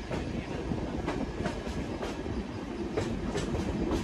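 Passenger train coach running along the track: a steady rumble with the wheels clicking over rail joints, the clicks coming in short uneven groups.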